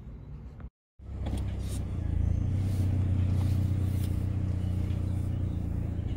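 Car engine running, heard from inside the car's cabin: a steady low hum that comes in after a short break of silence about a second in and holds steady.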